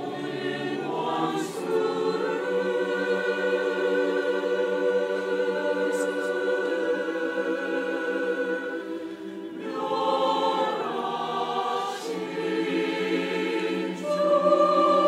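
Mixed church choir of men's and women's voices singing a Korean sacred anthem in long held chords. The sound dips briefly about nine and a half seconds in before the next phrase.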